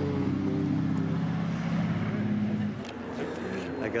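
A steady low engine hum that fades out a little under three seconds in.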